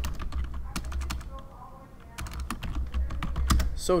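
Typing on a computer keyboard: two quick runs of keystrokes with a short pause between them, as a word is typed.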